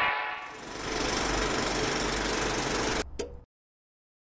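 Television-static sound effect: a hiss of white noise over a low hum, opening with a short electronic buzz and cutting off suddenly about three seconds in after a brief glitchy flicker.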